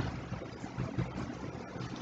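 A pause in speech holding only a faint, steady background hiss with a low hum: room tone from the recording.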